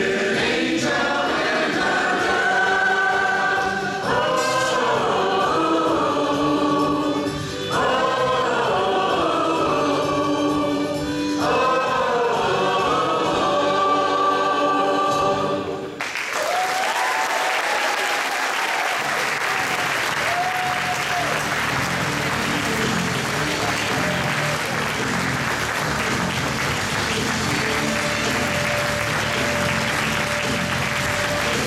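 A choir singing long held chords in phrases a few seconds long, which ends about halfway through. Audience applause then starts abruptly and keeps going, with a few faint held notes over it.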